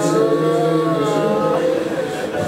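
A man's voice holding one long, slightly wavering sung note of a Shia elegy chant, fading out about a second and a half in.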